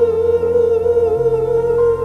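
Male soul singer holding one long high note with vibrato, sung through a Zoom V3 vocal processor, over a backing track of sustained keyboard chords; the chords change about a second in.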